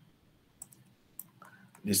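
Three short computer mouse clicks within about the first second and a quarter, then a man's voice begins near the end.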